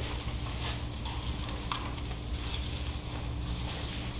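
Quiet room tone: a steady low hum with a few faint, light ticks and rustles, about one a second.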